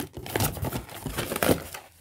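Cardboard box flaps being pulled open and folded back by hand: irregular rustling and scraping of cardboard with a few sharp crackles.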